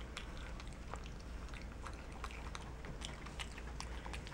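Capuchin monkey chewing gummy bears: faint, irregular soft clicks of the mouth working on the chewy sweets.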